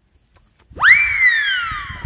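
After a brief silence, a single high whistle-like tone sweeps sharply upward and then glides slowly down over about a second.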